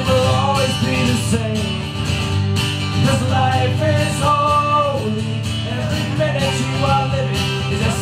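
Two acoustic guitars strummed in a steady rhythm, with a voice holding long wavering notes without clear words over them.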